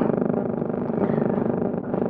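A steady buzzing hum at one unchanging pitch, with a stack of even overtones.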